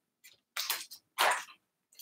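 Two short, soft rustles of a hand moving a piece on a wall chart, about half a second and a second and a quarter in.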